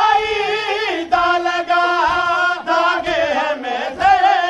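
Chanted recitation of a noha, a Shia lament: a voice sings long, wavering held notes, with short breaks about a second in and near three seconds.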